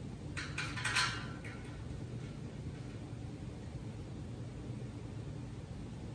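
A short clatter of metal parts being handled, several quick clinks and a scrape about half a second to a second and a half in, over a steady low hum.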